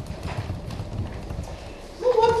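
Computer keyboard being typed on: a run of quick, irregular key clicks.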